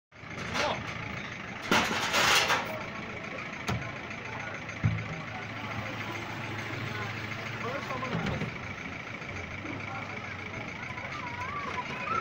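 Street background with a vehicle engine running steadily as a low hum. A loud hiss comes about two seconds in, and a couple of sharp knocks follow as plastic jerrycans are handled and set down.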